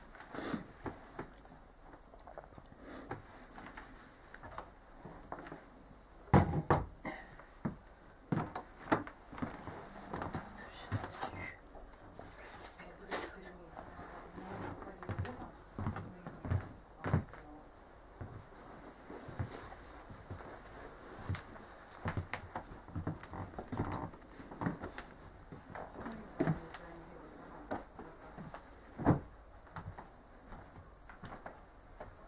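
Irregular knocks, clunks and handling noises of household objects being moved about, the sharpest about six seconds in and near the end.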